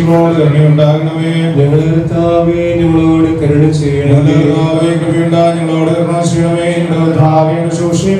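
A male priest chanting a liturgical prayer in a slow melodic recitative, holding long notes with small rises and falls in pitch.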